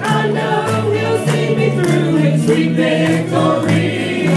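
Gospel group singing in harmony over a band, with a bass line stepping between notes under a steady beat.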